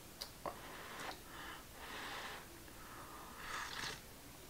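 Faint slurping sips of hot coffee from a mug, with breaths in between. There are a few small clicks in the first second.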